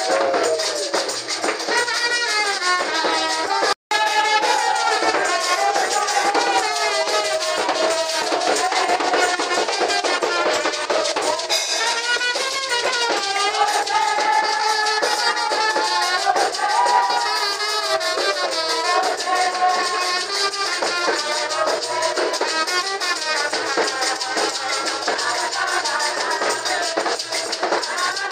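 Live Ghanaian church praise music: voices singing over drums and rattling hand percussion, keeping a steady, busy rhythm. The sound cuts out for an instant just before four seconds in.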